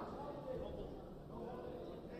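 Indistinct voices shouting and talking in an arena hall, over steady background noise.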